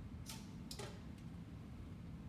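Clothes hangers clicking against a garment rack as they are pushed along, two short clicks about a third of a second and just under a second in, over faint room noise.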